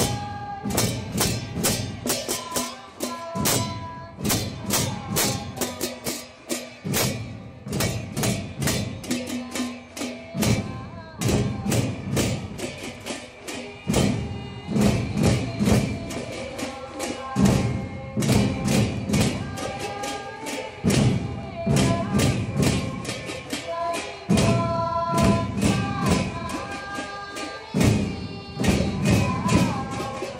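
Procession band playing: drums and hand cymbals struck on a fast steady beat, with a melody line held over them.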